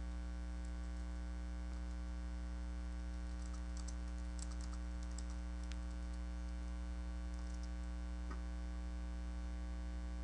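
Steady electrical mains hum, with faint computer keyboard clicks from typing between about three and six seconds in.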